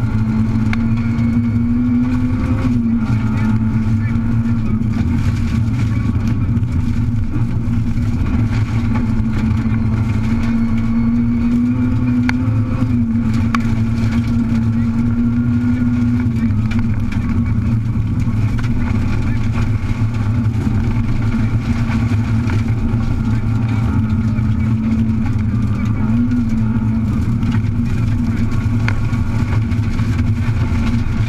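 Rally car engine heard from inside the cabin, running hard at a fairly steady pitch with small rises and dips. Tyre and gravel noise runs under it.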